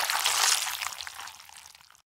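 The hissing tail of an explosion sound effect, fading away steadily to nothing near the end.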